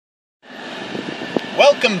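Steady hum of a car cabin starting after a brief silence, with a single sharp click about one and a half seconds in; a man's voice begins near the end.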